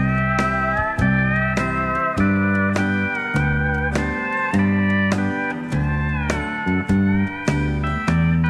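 Instrumental break in a 1970s Nashville country song: a steel guitar plays the lead with sliding, bending notes over an alternating bass line and a steady beat of about two strikes a second.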